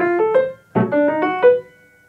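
Piano playing two short measures in a row, each a chord under a quick run of notes climbing in pitch, with a brief break between them. The last note rings and fades about a second and a half in.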